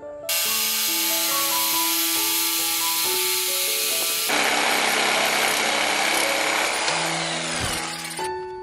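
Corded DeWalt jigsaw cutting a teak plank. The motor and blade run steadily, change tone about four seconds in, and fall in pitch near the end. A background music melody plays underneath.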